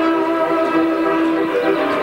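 Folk band of violins, accordion and double bass playing, holding a long sustained chord for about a second and a half before moving on to the next notes.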